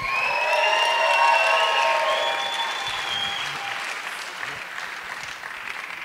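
Audience applauding and cheering for an incoming speaker, loudest about a second in, then dying down toward the end.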